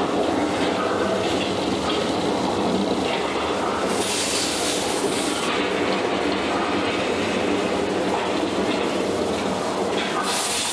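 Steady, loud rumble of the Studio Tram Tour ride and its Catastrophe Canyon effects, with a hissing burst about four seconds in that lasts a little over a second.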